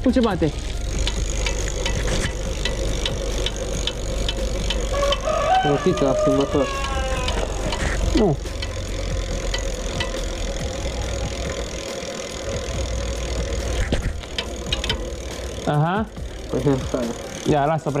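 Clicking and light rattling from a bicycle's rear wheel and chain drivetrain being turned and handled by hand, over a steady hum. Voices come in about halfway through and again near the end.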